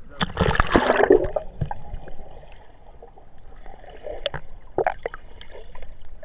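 Sea water splashing and gurgling right at the camera, with a loud splash in the first second, then quieter sloshing and a few small splashes.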